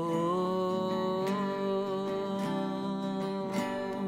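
A man's voice holding one long sung note over a strummed acoustic guitar.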